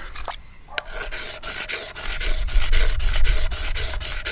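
A small stone blank being ground by hand on a wet sandstone slab: quick, gritty back-and-forth rubbing strokes, about four a second, starting about a second in. The strokes are tapering the piece from belly to tail while shaping an effigy pendant.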